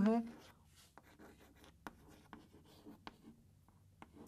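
Chalk writing on a chalkboard: a scattered series of light taps and short scratches as letters are written.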